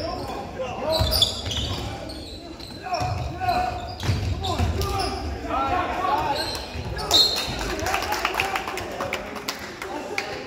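Basketball game in a gym: a basketball bouncing on the hardwood floor as it is dribbled, with spectators' voices echoing in the hall.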